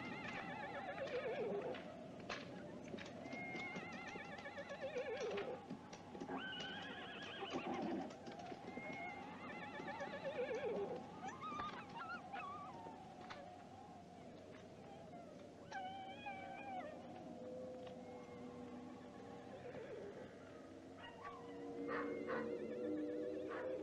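Horses whinnying several times, each call a falling, wavering neigh.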